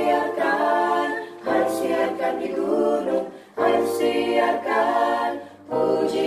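Small mixed choir of sopranos, altos and tenors singing a Christmas carol in parts, in phrases separated by short breaks.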